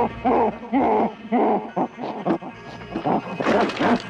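An ape calling in a run of short hooting grunts, about two a second, over background music.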